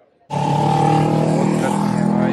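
A motor vehicle's engine running loud and close on a street. It cuts in suddenly about a third of a second in and holds a steady pitch.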